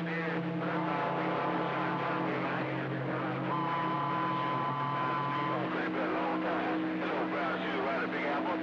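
CB radio receiver on AM channel 6 with several distant stations keyed up at once: garbled, overlapping voices under steady heterodyne whistles. The low tones shift a couple of times, and a higher whistle comes in near the middle and stops again.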